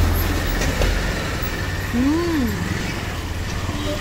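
Low rumble of vehicle engines from road traffic, strongest in the first second, with a short voiced sound rising and falling in pitch about two seconds in.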